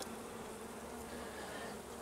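Honeybees humming steadily as they crowd over a comb frame lifted from a nucleus hive, a soft, even buzz.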